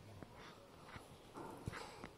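Near silence: faint room tone with a few soft, scattered taps.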